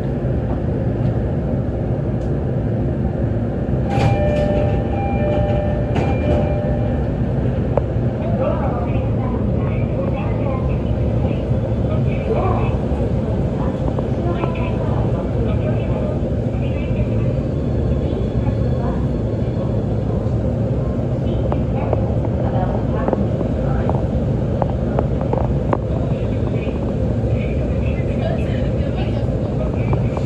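Interior noise of an E531-series commuter train: a steady, loud rumble, with faint voices of people talking over it. About four seconds in, a short electronic tone sounds for a couple of seconds.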